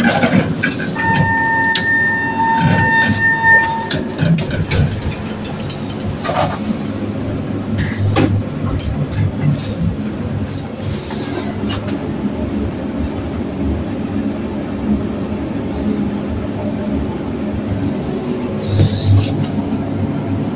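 Elevator car travelling down: a steady low mechanical rumble and hum with a few clicks. About a second in, a steady beep sounds for about three seconds.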